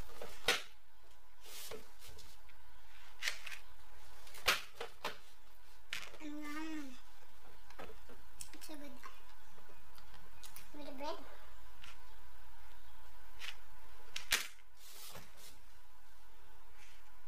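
Brief wordless vocal sounds from a woman, one a short wavering hum around the middle, among scattered sharp clicks and taps.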